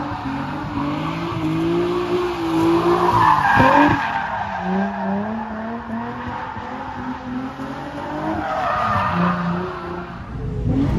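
V6 drift car's engine revving hard with its rear tyres squealing and skidding through a slide, the engine note rising and falling. About four seconds in the revs drop sharply, settle lower, then climb again near the end.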